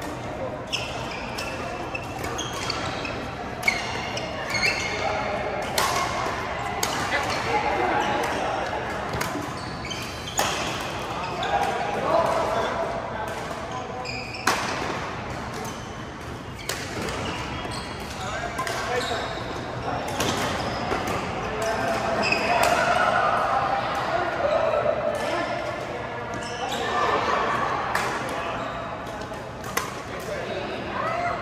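Badminton rackets striking a shuttlecock during a doubles rally: sharp hits at irregular intervals, over voices echoing in a large sports hall.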